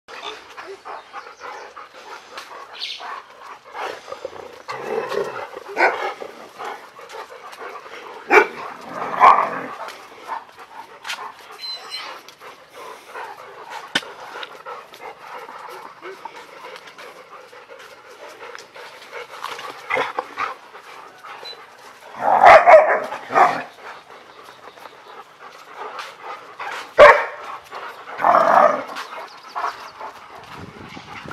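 A dog barking in short bursts, several times, the loudest a little past the middle and near the end.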